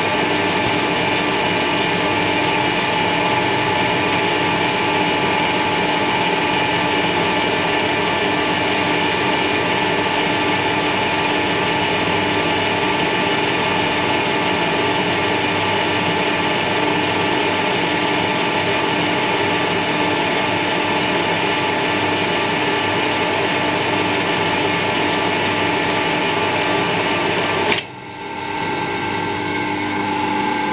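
Metal lathe running under power, geared for single-point thread cutting: a steady mechanical hum with several even whining tones. Near the end the sound drops abruptly for a moment and then builds back up.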